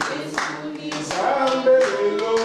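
Congregation singing a worship song together, with regular rhythmic hand clapping in time with the singing.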